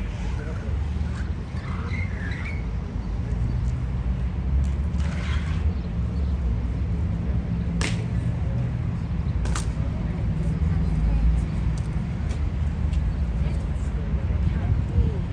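Steady low rumble of outdoor city background under crowd chatter, with two sharp knocks about eight and nine and a half seconds in, from the Evzone guards' hobnailed tsarouchia shoes striking the marble as they march.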